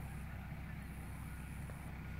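Quiet outdoor background: a steady low hum with no distinct events, and a faint high hiss that comes and goes.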